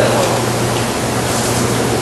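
Steady hiss with a low hum: the background noise of the lecture-hall recording.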